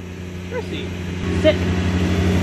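Lawn mower engine running with a steady low hum that grows louder, turning into a rapid even throb a little past a second in.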